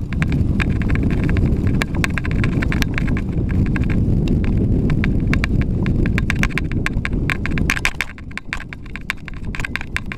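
Mountain bike clicking and rattling sharply and irregularly as it is ridden fast over a rough dirt trail, with heavy wind rumble on the handlebar camera's microphone. The wind rumble drops off about eight seconds in, leaving the rattles clearer.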